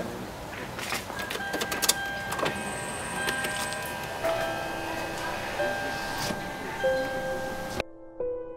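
Scattered clicks and knocks from a car door and cabin being handled as someone settles into the driver's seat, over outdoor background noise with a few faint, steady whistling tones.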